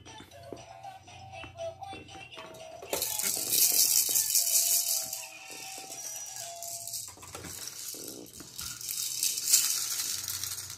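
A plastic baby rattle being shaken by hand. It rattles hard for about two seconds starting roughly three seconds in, and again near the end. A simple electronic toy tune plays in the first few seconds.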